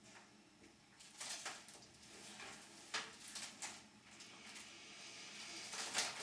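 Faint rustling and shifting in a quiet small room, a handful of soft short noises in the first few seconds, from a person moving in a wicker armchair.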